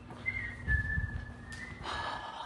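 A person whistling a few held notes that step up and down in pitch, with low dull thuds about a second in.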